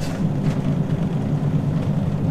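Fiat Ducato camper van's diesel engine and tyre noise heard from inside the cab while driving at a steady pace, a steady low hum.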